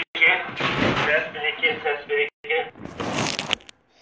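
Voice speaking without clear words, then a short burst of hissing crackle about three seconds in.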